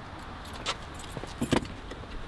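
Things being handled in an SUV's cargo area: a few light clicks and rattles as items are moved about, about half a second in and again around a second and a half.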